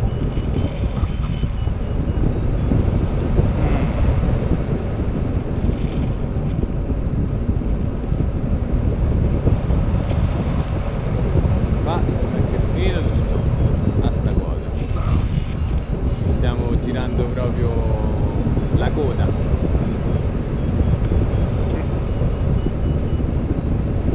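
Steady, loud wind buffeting the camera microphone as a tandem paraglider flies through the air, a continuous low rumble.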